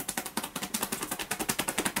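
Rapid, even patting of hands striking the top and back of a person's head in a percussion (tapotement) massage, about ten light slaps a second.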